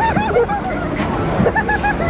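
Children's high-pitched voices chattering and giggling over the babble of a street crowd.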